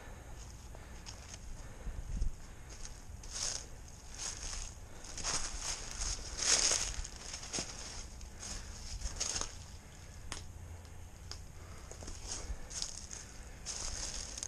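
Footsteps crunching through dry fallen leaves in irregular steps, the loudest crunch about six and a half seconds in.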